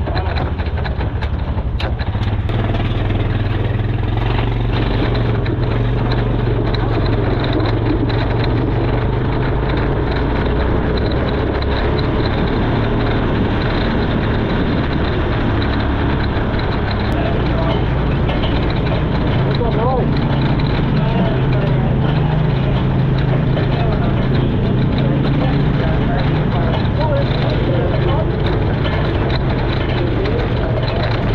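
Winged 360 sprint car's V8 engine running steadily at low revs as the car rolls around the dirt track, heard close up from the cockpit.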